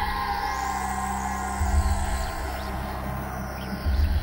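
A live band's ambient, electronic-sounding passage: a sustained tone slowly gliding down in pitch over swirling sweeping effects, with a deep low pulse about every two seconds.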